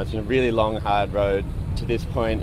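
A person talking over a steady low rumble that cuts in abruptly at the start.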